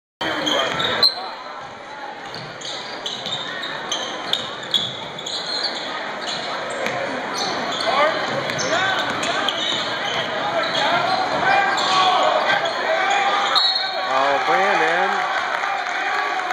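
Basketball game on a hardwood gym court: the ball bouncing in scattered sharp thuds and shoes squeaking, echoing in the large gym. A voice calls out near the end.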